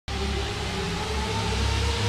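Logo-intro sound effect: a dense wash of noise over a low pulsing rumble, with faint tones slowly rising in pitch as it builds a little louder.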